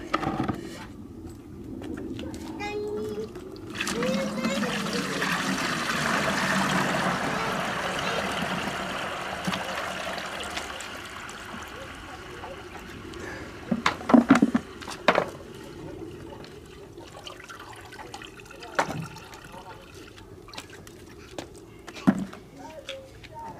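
Water poured from a plastic bucket through a cloth filter into another bucket, rushing for several seconds and tapering off. A few sharp knocks of the plastic buckets follow.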